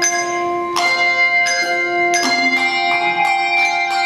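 Handbell choir playing a piece: chords of several bells struck together about every three-quarters of a second, each chord ringing on under the next.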